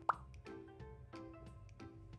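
A short rising 'bloop' sound effect just after the start, over quiet background music with soft, sustained notes.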